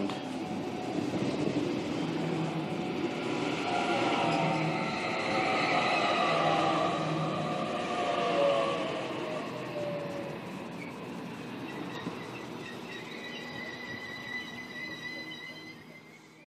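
Sydney Trains Waratah electric suburban train running in along the platform: wheel-on-rail rumble with an electric motor whine that slides down in pitch as the train slows. Fainter high steady tones follow near the end.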